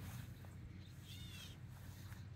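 Gray catbird giving a faint, arched, mew-like call about a second in, over low steady background noise.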